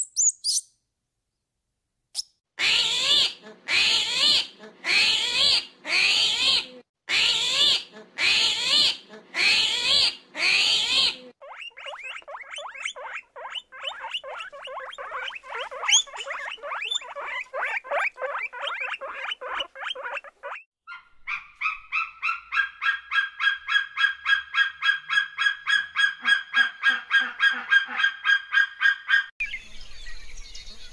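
Animal calls in three runs: eight loud, harsh, honk-like calls about a second apart, then a long fast rattling trill, then a fast pulsed call at a steady pitch, about five pulses a second, that stops shortly before the end.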